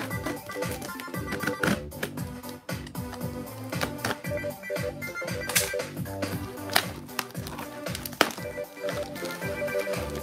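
Background music playing under irregular sharp clicks and crackles of packing tape and cardboard being picked at and torn on a heavily taped box, with a few louder snaps in the second half.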